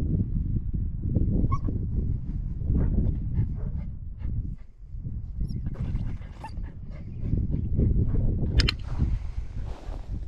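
Nine-week-old German shepherd puppy giving a few short whimpers over a steady low rumble. Near the end comes a sharp double click from a training clicker, marking the puppy for getting onto the place board.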